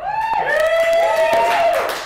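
A long, high-pitched whoop from more than one voice, held for nearly two seconds.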